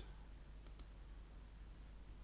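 Two faint computer clicks about two-thirds of a second in, over near-silent room tone.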